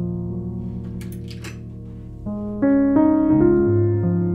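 Background piano music: soft sustained chords that change every second or so and grow louder in the second half. A brief cluster of faint high clicks comes about a second in.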